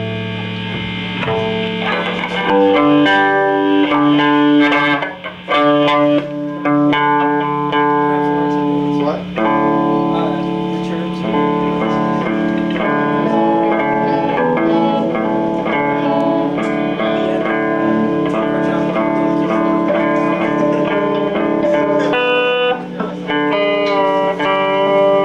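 Semi-hollow-body electric guitar played through an amplifier, ringing chords and picked notes that change every second or so.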